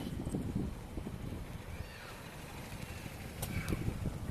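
Low rumble of wind buffeting a handheld camera's microphone outdoors, with a few faint footsteps near the end as the walker crosses a road.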